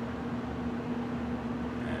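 Hitzer 710 anthracite stoker furnace running: a steady blower rush with a constant low hum underneath.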